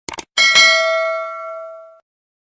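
Subscribe-button animation sound effect: a quick double mouse click, then a single bell ding about half a second in that rings on with several overtones and fades away over the next second and a half.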